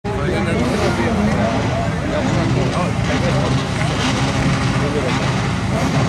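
Several standard-class autocross cars' engines idling and revving together on the start line, a dense steady engine noise with the pitch wavering as drivers blip the throttle. Voices can be heard over it.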